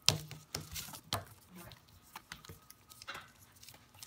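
Irregular sharp clicks and light crinkling as the drain wire is pulled out of a double-wall shielded RF Armor cable and the wire and cable are handled on a tabletop.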